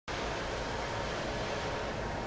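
Steady hum and hiss of machine-shop background noise, with a faint steady tone running through it.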